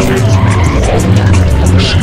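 Dense layered mix of music with a heavy bass line, voices and race-car engine and tyre noise.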